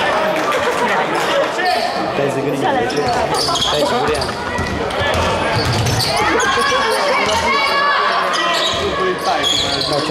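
Basketball being dribbled on a wooden sports-hall floor during live play, with players' and spectators' voices throughout.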